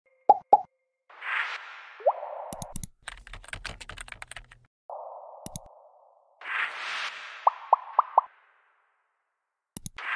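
User-interface sound effects for an animated web search: two quick pops, swelling whooshes, a rapid run of keyboard-typing clicks, single mouse clicks, and four quick rising plops near the end.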